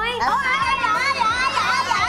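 Several children's voices calling out together, drawn out and wavering, over soft background music.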